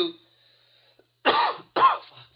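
A man coughs twice, turned away with his hand to his mouth, two short loud coughs about half a second apart starting a little over a second in.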